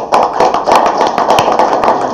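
Audience applauding: a dense patter of many hands clapping together.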